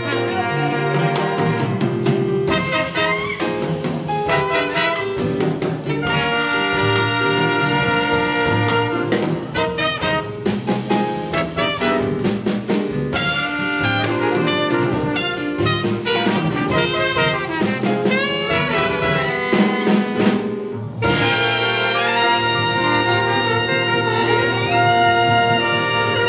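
Live jazz ensemble: trumpet, flugelhorn, trombone and alto saxophone play a theme together over double bass and drums with cymbal strikes. Near the end the horns break off and come in together on a new held chord.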